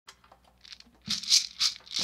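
A few faint clicks, then four quick rattling shakes like a maraca or shaker in the second half.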